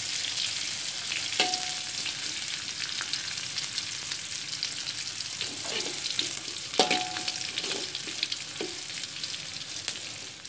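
Food sizzling in hot oil in a steel wok while a slotted metal spatula stirs and scrapes it. Twice the spatula knocks against the wok, each knock ringing briefly, the second one the loudest.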